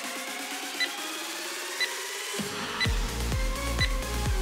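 Electronic workout background music. A rising sweep builds for about two and a half seconds, then a steady drum beat kicks in, with short high ticks about once a second marking the countdown.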